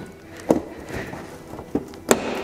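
Plastic bumper trim piece on a Toyota 4Runner popping out of its clips as it is pulled free: a sharp plastic click about half a second in and a smaller one near the end, with light plastic rustling in between.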